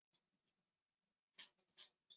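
Near silence: room tone, with two faint, short scratchy rustles about a second and a half in.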